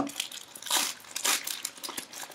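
Foil-lined trading card pack crinkling and tearing as it is pulled open by hand and the wrapper peeled off the cards, in a few short bursts.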